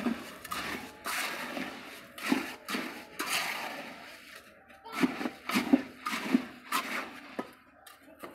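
Gravel and concrete mix being scooped and packed by hand and with a small trowel: irregular gritty scrapes and rattles of stones, with a short lull about halfway through.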